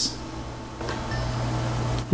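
Steady low hum with a background hiss, growing a little louder about a second in.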